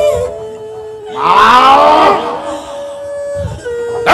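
Lakhon Bassac Khmer theatre performance: a steady held musical tone, and about a second in a loud, drawn-out vocal cry that slides down in pitch for about a second.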